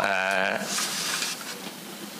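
A man's drawn-out hesitation sound, a held 'uh' at a steady pitch for about half a second at the start, then a brief soft hiss and quiet room tone over a microphone.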